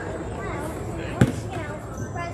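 A basketball bouncing once on the court about a second in, over background voices in the gym.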